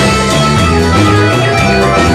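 Live band playing an instrumental passage: a bayan (button accordion) carries sustained chords and melody over a drum kit, guitar and keyboards, with a steady drum beat.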